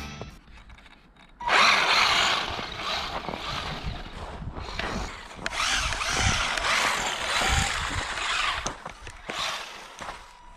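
Electric motor and gear drive of a Tamiya DF-03 RC buggy whining as it is driven on snow, starting suddenly about one and a half seconds in and rising and falling with the throttle.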